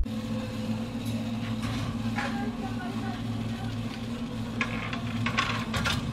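A steady low hum with faint voices in the background, and a few soft knocks and rustles.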